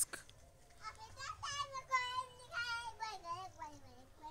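A young child's voice in the background, faint, drawn out for about three seconds and falling in pitch toward the end.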